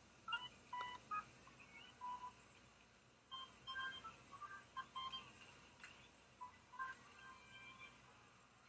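Faint ballpark PA music between pitches: short, steady electronic notes at several pitches, played in quick groups.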